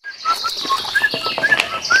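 Birds chirping: a quick run of short, repeated chirps over a steady high hiss, with scattered clicks, starting abruptly.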